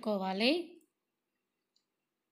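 A voice speaking a few words in the first second, fading out; the rest is near silence.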